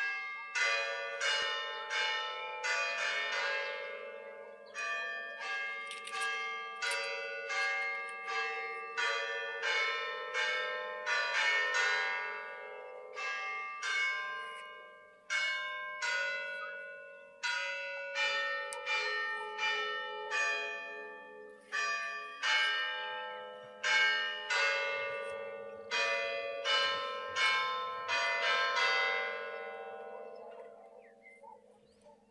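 Church bells ringing a long peal: struck notes on several pitches, roughly one to two strikes a second, each ringing on and overlapping the next.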